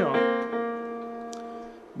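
Electronic keyboard in a piano voice, its notes left ringing and slowly dying away over about two seconds: the B-flat to C major second just demonstrated.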